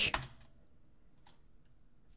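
Faint computer keyboard key clicks: a couple of keystrokes right at the start and a single one a little past a second in, otherwise quiet room tone.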